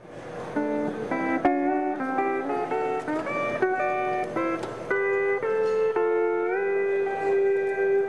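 Fender six-string Stringmaster non-pedal steel guitar playing a melody alone, its notes sliding up into pitch under the bar, ending on a long held note. It fades in at the start.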